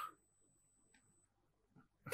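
Near silence: a pause between words, with one faint tick about a second in.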